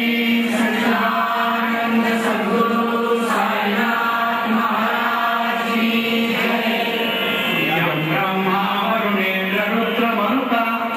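Hindu devotional chanting, a prayer sung on a steady held pitch with slow shifts and no pauses.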